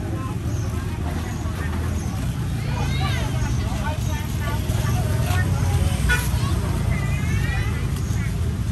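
Busy outdoor market ambience: a steady low rumble of passing traffic under people's voices, one voice standing out about three seconds in and again near the end.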